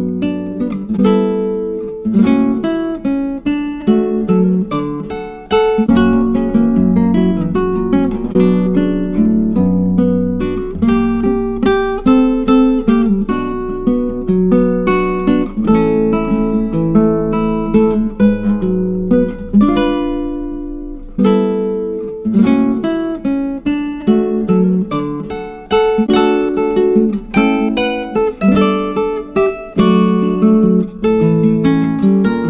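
Background music played on an acoustic guitar: a steady run of plucked notes and chords, with a brief pause about twenty seconds in.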